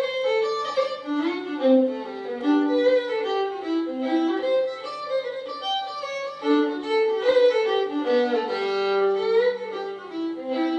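Fiddle playing an Irish traditional tune, a quick run of short notes.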